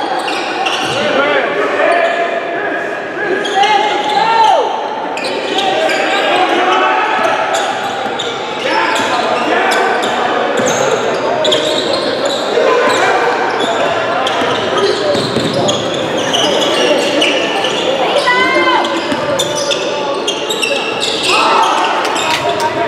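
Basketball game in a gym: many spectators talking at once, echoing in the large hall, with a basketball bouncing on the hardwood court and sharp short knocks throughout.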